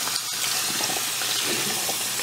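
Bathroom sink faucet running steadily, its stream splashing over hands that are washing a soapy cloth.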